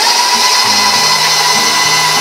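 KitchenAid Professional 600 stand mixer running, its motor giving a steady whine as the beater works cream cheese and sugar in the steel bowl.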